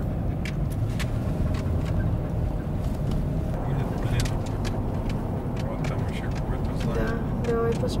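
Car driving along an open road, heard from inside the cabin: a steady low rumble of engine and tyres, with scattered light clicks. A voice comes in briefly near the end.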